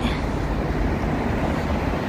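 Steady low rumble of city background noise, with no distinct events.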